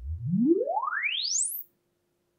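Sine-sweep test tone from the hi-fi loudspeaker, gliding smoothly upward from deep bass to a very high pitch in about a second and a half, then cutting off: the measurement signal for the app's room-acoustics and impulse-response measurement.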